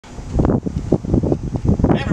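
Wind buffeting the microphone outdoors, an uneven rumbling noise that surges and drops.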